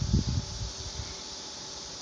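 A few low bumps and rustles of hands handling a cardboard tag in the first half second, then a steady background hiss.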